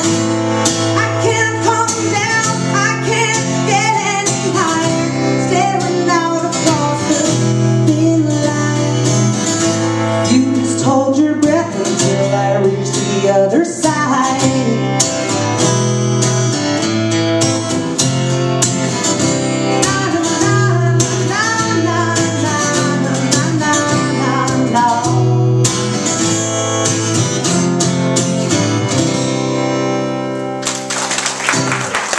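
A steel-string acoustic guitar strummed steadily through a song's closing section, with a woman's voice singing over it in places.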